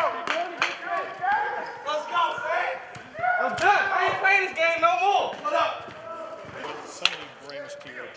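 Basketballs bouncing on a hardwood court in a large arena, with players' voices calling and chattering over them. There is a single sharp knock about seven seconds in.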